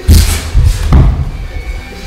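Three heavy thuds from two boxers sparring in a ring, coming in quick succession within about the first second.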